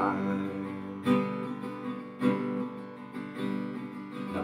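Acoustic guitar strumming chords, with a new strum about every second that is left to ring and fade before the next.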